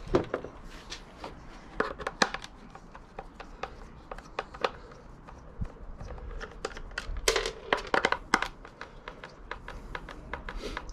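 Scattered clicks, knocks and light scrapes of a small metal power-supply box and a screwdriver being handled on a plastic base, with a denser run of sharper knocks about seven to eight and a half seconds in.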